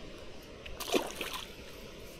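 A small splash about a second in, as a bluegill is let go into the lake.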